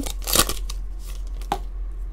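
Foil wrapper of a Panini Chronicles basketball card pack being torn open: a short crinkly rip in the first half second, then a single light tick about a second and a half in.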